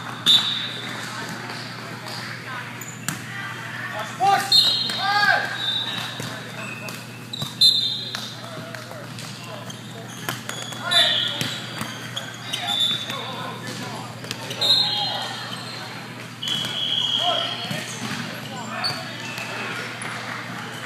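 Indoor volleyball play: sharp slaps of the ball being hit and bouncing on the court every few seconds, short high squeaks of sneakers on the floor, and players shouting, in a large gym hall.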